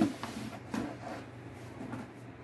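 Cardboard shipping box being handled and shifted on a bed, giving a few faint knocks and rustles.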